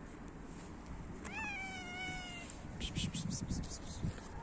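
A tortoiseshell cat gives one long meow, about a second long, that rises at the start and then holds steady. Near the end comes a quick run of short scuffling noises.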